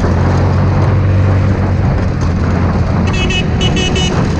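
Hammerhead GTS 150 go-kart's 150cc four-stroke single-cylinder engine running at a steady speed under way, loud and close from the driver's seat. Near the end a few short high-pitched squeaks cut in over it.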